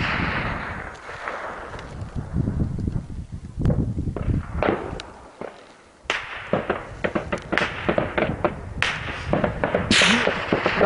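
Gunfire in a firefight, the shots echoing off the hills. The echo of a loud shot dies away at the start, a few single cracks follow, and from about six seconds in the shots come rapidly one after another.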